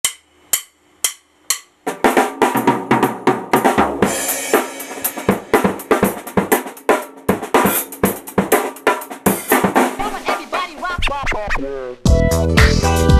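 Acoustic drum kit played with sticks: a few separate hits about two a second, then a busy groove of snare, bass drum and cymbals for about ten seconds, stopping suddenly near the end.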